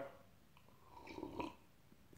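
A faint sip and swallow of beer from a glass, about a second in, with small wet mouth clicks.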